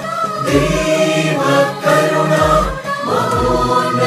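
A choir singing a Christian devotional hymn over instrumental accompaniment, with deep bass notes sounding a few times.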